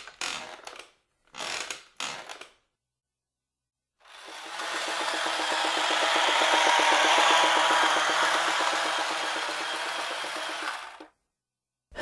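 Cartoon sound effects of a wooden rocking horse being ridden: three short creaks, then a long rattling whirr with a low hum underneath that swells and then fades.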